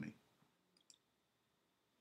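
Near silence, with two or three faint short clicks a little under a second in.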